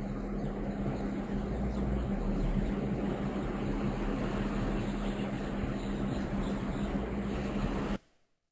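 Ocean waves breaking, a steady rushing noise with a low steady hum beneath it, which cuts off suddenly.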